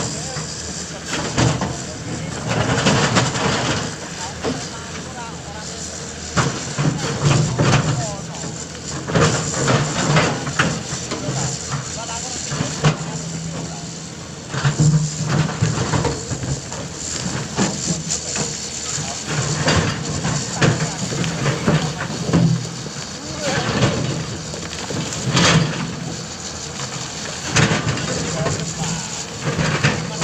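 Caterpillar 329 hydraulic excavator digging into a rocky earth bank: its diesel engine runs with a steady low drone that swells repeatedly as the hydraulics take load, over frequent knocks and clatter of rock and soil from the bucket.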